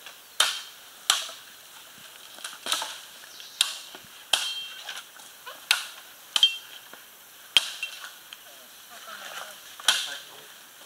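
Sharp chopping blows struck into the base of a standing bamboo culm, about one a second at an uneven pace, each with a short hollow, high ring from the bamboo.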